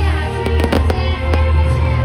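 Stage pyrotechnics going off: a quick cluster of sharp bangs in the first second and a half, over loud music with a heavy bass.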